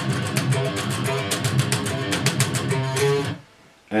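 Distorted ESP EC1000 electric guitar with active EMG pickups playing a fast, tightly picked metal riff of rapid, even note attacks. The riff mixes pull-offs with palm-muted notes. It stops abruptly about three-quarters of the way in.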